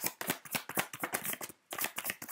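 A deck of oracle cards being shuffled by hand: a rapid run of crisp card flicks, several a second, with a short break a little past the middle.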